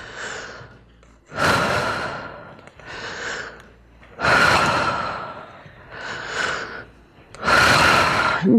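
A woman breathing deeply and audibly through the mouth in a paced breathing exercise, timed to rising onto tiptoes and sinking back. There are three long, loud breaths about three seconds apart, each fading away, with a softer breath between each pair.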